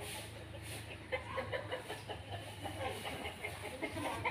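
Birds calling faintly: a string of short, separate calls starting about a second in.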